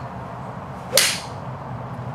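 A golf club striking a ball off a hitting mat: one sharp crack about a second in, with a brief whoosh trailing it.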